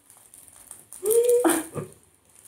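A woman's short wordless vocal sound about a second in: a held note, then a shorter falling one, over faint chewing and crinkling from eating a seaweed wrap.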